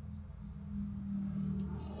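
A woman humming a steady, low held note.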